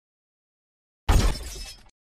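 A glass-shattering sound effect: one sudden crash about a second in, with the breaking clatter fading out within about a second.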